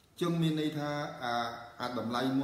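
A man speaking Khmer, starting just after a brief pause.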